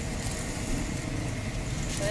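A steady low mechanical rumble that holds at an even level, with faint voices in the background.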